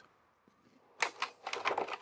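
Near silence, then about a second in a fast, irregular run of sharp clicks, roughly eight to ten a second.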